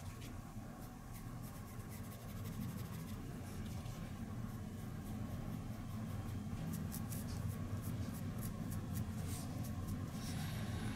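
Faint scratching of a paintbrush scrubbing paint into the mortar lines of a textured model brick gate post, in many short light strokes, over a low steady hum.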